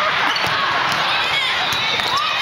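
Volleyball play in a large sports hall: a babble of many voices calling and talking, with the thuds of balls being struck and bounced on the courts.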